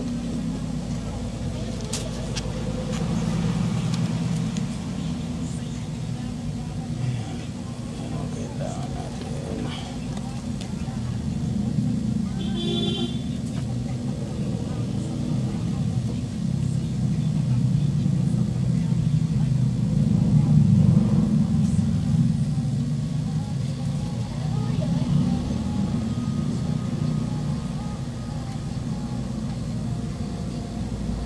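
A steady low background rumble, like a motor running, under a few faint clicks and taps of the tablet being handled.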